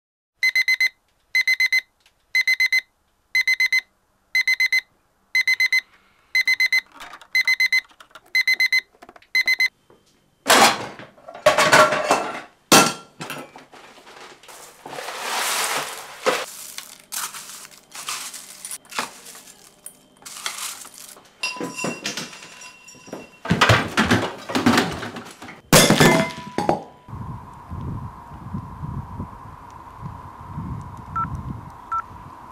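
A digital alarm clock beeps in short bursts, about one a second, ten times. It then stops, giving way to kitchen clatter, knocks and rustling as breakfast cereal is poured from its box into a bowl. A faint steady tone follows near the end.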